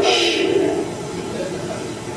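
A woman shushing: one short hissing "shhh" at the start.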